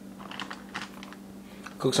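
A plastic bag of brown rice being handled, giving a few light, irregular crinkles and clicks over a steady low hum.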